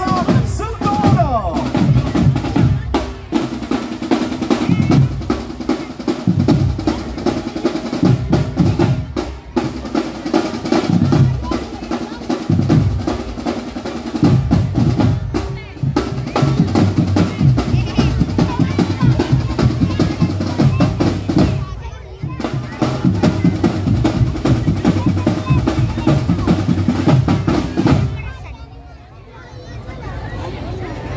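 Marching drum band of snare and bass drums playing a fast, driving rhythm with snare rolls. The drumming stops suddenly about two seconds before the end.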